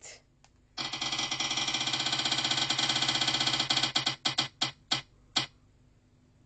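Spin-the-wheel phone app ticking through the phone's speaker as the prize wheel spins: rapid clicks start about a second in, then slow and space out over the last two seconds as the wheel comes to a stop.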